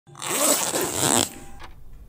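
Zipper of a black hard-shell zip case being pulled along in one run lasting about a second, followed by a faint click.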